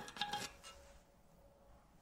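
A few faint metallic ticks in the first half second, with a brief ringing: a TIG filler rod tapping the steel workpiece. Near silence follows.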